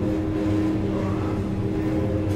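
A steady low hum made of several held tones, running evenly with no breaks.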